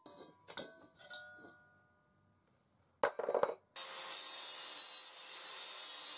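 A hammer strikes the steel valve collar of a disposable helium cylinder a few times, each blow ringing. After a short pause an angle grinder bites into the steel of the depressurised cylinder: a loud, steady grinding hiss for the last two seconds or so, the first cut into the canister.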